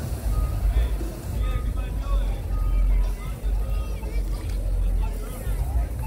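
Busy street ambience: background voices and music over a steady low rumble.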